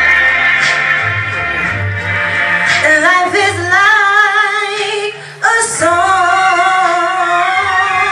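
A woman singing solo into a microphone over low instrumental accompaniment. She holds long notes with vibrato and breaks off briefly about five seconds in before coming back in on a new held note.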